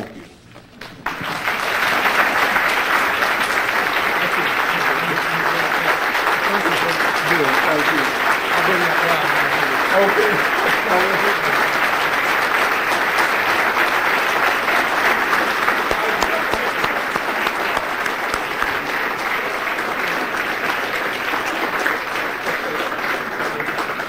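A large audience applauding steadily. The applause starts about a second in, with some voices mixed in.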